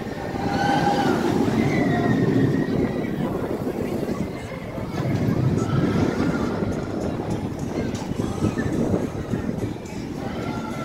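Steel roller coaster train running along its track nearby, swelling twice, mixed with distant voices and background music.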